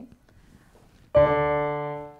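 Roland digital piano: a single note struck about a second in, then ringing steadily and slowly fading, played to demonstrate an octave.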